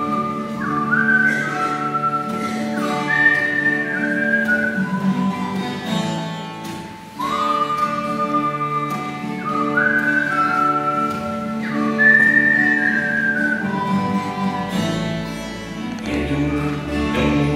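Instrumental passage of a folk group: a high, whistle-like melody plays a phrase of held notes and then repeats it about seven seconds in, over acoustic guitars and double bass.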